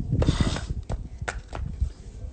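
Rubbing and handling noise right at the phone's microphone, loudest in the first half-second, followed by a few sharp clicks and low knocks.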